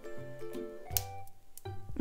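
Background music with steady keyboard-like notes. About a second in there is a single sharp click, a plastic safety-eye back snapping onto its post.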